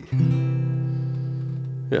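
Acoustic guitar strummed once on a C7 chord, left ringing and slowly fading.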